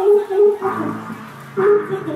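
Hip-hop dance track playing, with short vocal chops repeating several times a second over a held bass line.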